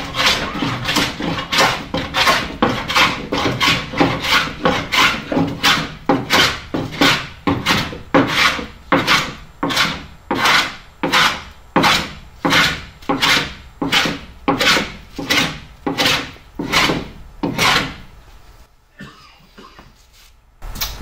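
Hand plane with a curved sole shaving the strip planking of a wooden hull, in quick, steady back-and-forth strokes of about two a second. Each stroke is a rasping cut into the wood, which means the plane is set at the right angle and taking shavings. The strokes slow slightly and stop near the end.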